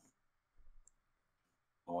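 Near silence, broken by a couple of faint clicks a little over half a second in; a man's voice starts just before the end.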